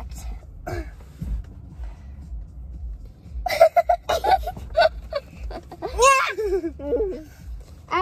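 A child clears her throat, then two girls laugh and let out high-pitched excited exclamations for about four seconds from midway.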